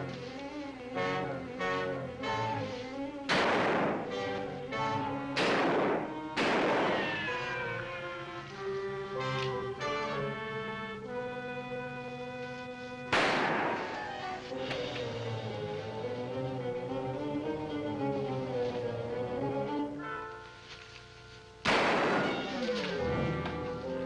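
Dramatic orchestral film score with strings and brass, cut by five revolver shots from a gunfight, each a sharp crack that rings briefly: three in quick succession early on, one midway, and one near the end after a short lull in the music.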